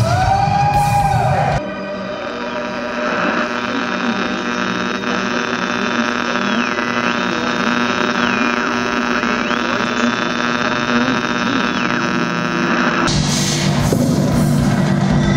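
Loud music cuts off about a second and a half in, leaving a steady electric hum with many overtones and a high electronic tone that steps up and down between two pitches several times. Loud rock music with drums comes back in near the end.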